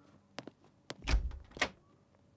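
A few footsteps on a hard floor, then a wooden door being opened about a second in: a low thump followed shortly by a sharp click.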